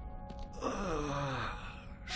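A man's long, breathy moan that slides down in pitch, over quiet background music.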